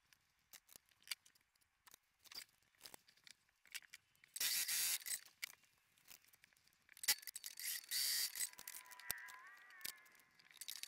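Electric sewing machine stitching fabric in two short runs, about four and a half and eight seconds in, with a thin whine that rises near the end. Between the runs, small clicks and rustles of fabric pieces being handled.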